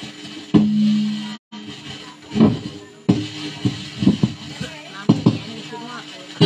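Guitar strumming a few separate chords, each struck and left to ring, over background chatter. The sound cuts out for a moment about a second and a half in.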